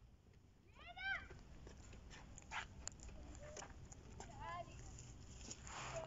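A cat meowing twice: a short call that rises and falls about a second in, and a second, quieter one about four and a half seconds in, over faint background noise.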